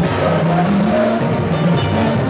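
Live band music played loud through PA speakers, steady and continuous, with a strong bass line.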